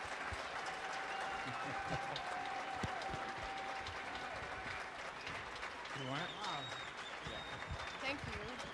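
Audience applauding steadily, with a few voices faintly heard in the crowd about six seconds in.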